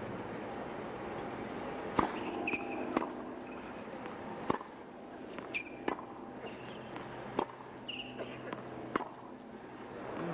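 Tennis rally on a hard court: six racket strikes on the ball about a second and a half apart, the first (the serve) the loudest. Short sneaker squeaks come between the shots.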